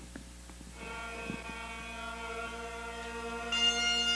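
Bagpipes from the video's soundtrack, played over the room's speakers: the steady drones sound about a second in, and the louder, higher chanter melody comes in near the end.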